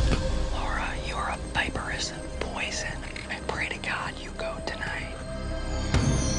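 A person whispering over background music.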